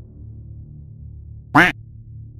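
A single short duck-quack sound effect about one and a half seconds in, over a quiet, steady background music bed.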